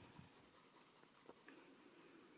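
Faint scratching of a Crayola colored pencil shading on paper, barely above silence.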